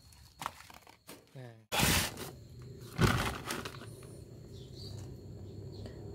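Black plastic polybag crinkling as it is handled, in two brief rustles.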